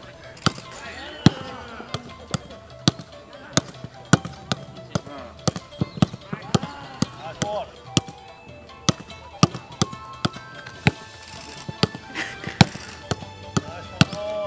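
A football being trapped and passed back and forth on grass in a fast two-touch passing drill: a sharp thud of foot on ball roughly twice a second, over background music.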